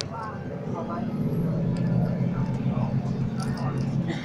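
City bus engine running steadily, heard from inside the passenger cabin, with people talking in the background.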